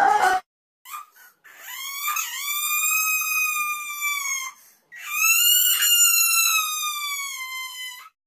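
High-pitched cartoon crying sound effect: two long wailing sobs, the second starting about five seconds in, each sagging slightly in pitch toward its end. A brief exclaimed 'oh my God' cuts off at the very start.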